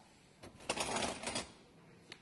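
A brief clatter and scrape of things being handled, starting about half a second in and lasting about a second.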